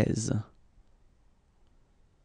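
A voice saying the French number word "treize" (thirteen), which ends about half a second in, followed by near silence with a faint low room hum.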